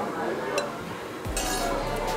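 A metal spoon clinks once against a ceramic soup bowl, against a background of low eatery chatter.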